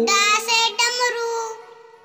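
A child's singing voice over a soft music backing, singing the end of a line of a Hindi alphabet song and fading out about one and a half seconds in.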